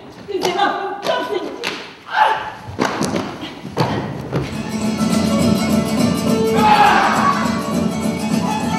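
Stage-performance sound: a run of hard thuds among raised voices for about the first four seconds, then sustained music with voices singing over it.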